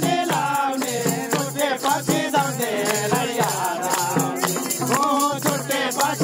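Live Nepali dohori folk singing by a crowd of voices. Beneath it, a hand tambourine jingles and a low drum beats a steady, repeating rhythm.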